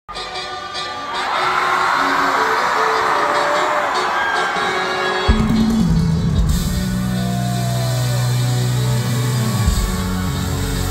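Live concert crowd screaming and cheering, then about five seconds in a heavy, deep bass line of the show's intro music drops in through the arena PA under the cheers.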